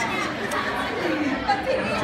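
Background chatter: other people's voices talking over a steady room noise.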